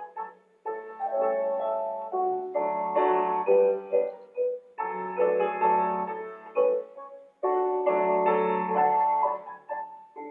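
Piano playing ballet-class accompaniment in chords and melody, in phrases broken by short pauses.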